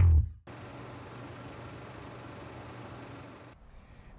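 The last plucked note of a guitar and bass music outro dies away, then an even static hiss, like an old film reel, runs for about three seconds and cuts off suddenly.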